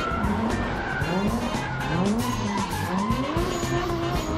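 Car engine revving up and down several times with tyres skidding on tarmac, over background music.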